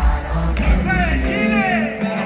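Live reggaeton music over a stadium sound system, heard from the stands. A heavy bass beat drops out a little past halfway, leaving high lines that slide up and down in pitch.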